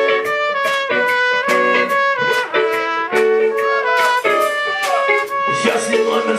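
Live band music: a trumpet leads a horn melody in held notes over a steady drum beat.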